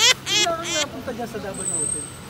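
People's voices: a few short, high-pitched exclamations or laughs in quick succession, followed by talking, over a steady low hum.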